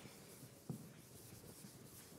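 Faint sound of chalk writing on a blackboard, with one sharper chalk tap about a third of the way in.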